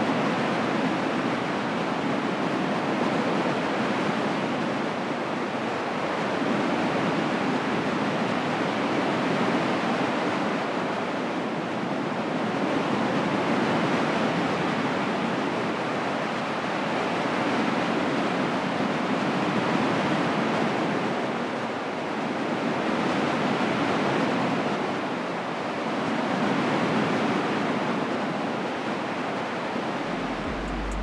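Ocean surf: a steady rushing wash of waves that swells and eases every few seconds.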